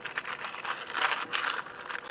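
A quick run of small clicks and rattles from size 5 fishhooks being handled in the hands.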